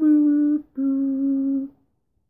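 A man humming two held notes, the second a little lower and longer than the first.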